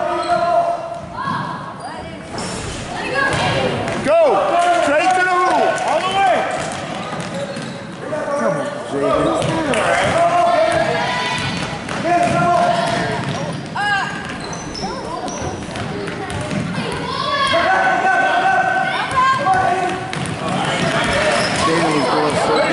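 A basketball dribbled on a hardwood gym floor during a game, with sneakers squeaking as players run. Spectators' voices carry through the echoing hall.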